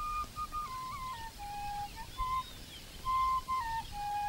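Solo flute melody in soundtrack music: a single line of held notes that slide down from one pitch to the next, then step back up.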